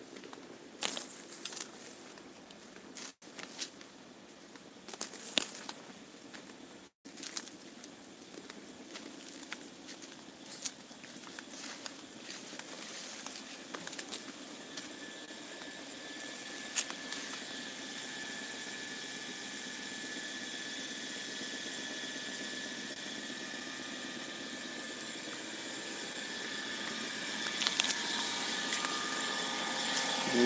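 Footsteps crackling through dry leaf litter, then the steady whine of an electric water-pump motor that comes in about halfway and grows louder toward the end as it is approached.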